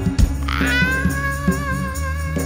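Live band music: bass and drums keep a beat under a long, wavering high note that slides up into pitch about half a second in and then holds.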